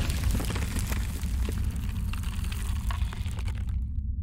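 Cinematic logo-reveal sound effect: a deep rumble with crackling, like stone cracking apart. The crackle dies away just before the end, leaving only the low rumble.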